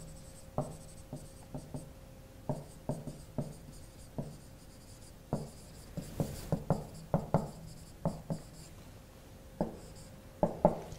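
Marker writing on a whiteboard: a run of short, irregular strokes and taps of the pen tip, busiest about six to seven seconds in.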